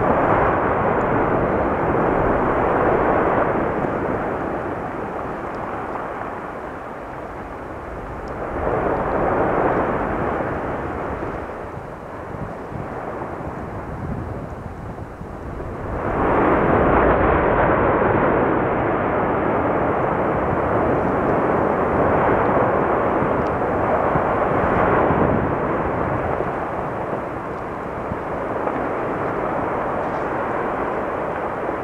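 Explosive volcanic eruption blasting out ash and lava bombs, heard as a continuous rushing roar. It swells and eases several times, with its strongest stretch lasting about ten seconds in the second half.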